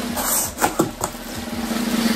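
Plastic bubble-wrap packaging crinkling and rustling as a boxed collectible is pulled out of a shipping box, with a few sharp crackles in the first second. A steady low tone runs underneath.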